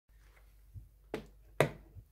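Three sharp knocks and clicks about half a second apart, growing louder, the last the loudest: handling noise as the phone is set down and the person moves close to it.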